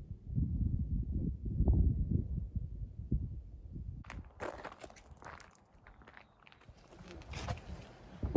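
Wind buffeting the camera microphone in uneven gusts of low rumble. It cuts off abruptly about halfway through and gives way to faint, quiet outdoor background with a few light ticks.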